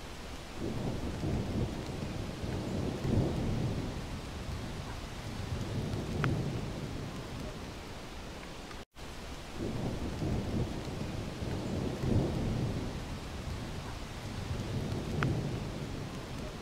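Waterfall: a steady rush of falling water with slow swells of deep rumble. The sound cuts out for an instant about nine seconds in, then the same stretch repeats.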